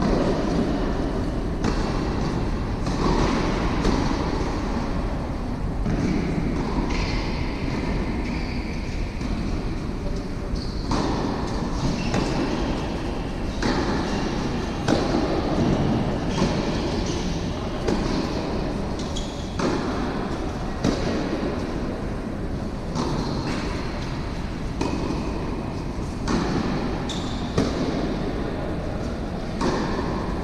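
Steady rumbling room noise of a large indoor tennis hall, broken every second or two by brief knocks and a few faint short high tones.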